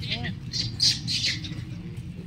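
A quick run of harsh squawking animal calls, loudest a little under a second in, over a low steady hum.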